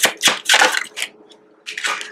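Tarot cards being shuffled in the hands: a quick run of papery card slaps for about a second, a short pause, then a few softer card sounds near the end as one card is drawn from the deck.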